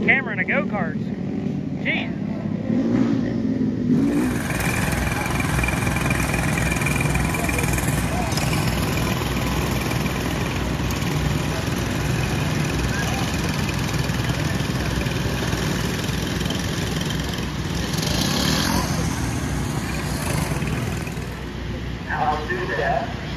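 Several small go-kart engines running together, a dense, steady engine noise that becomes louder and fuller about four seconds in.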